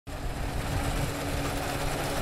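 CLAAS Dominator combine harvester running as it harvests wheat: a steady engine drone with one constant hum over a low rumble.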